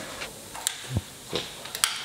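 A handful of short, separate clicks and taps.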